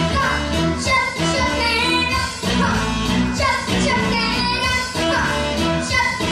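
A young girl singing a pop song into a microphone over a backing track with a bass line.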